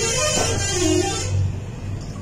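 Liquid being poured through a metal funnel into a plastic bottle, a hissing splash with a wavering ring from the bottle, which stops about a second and a half in.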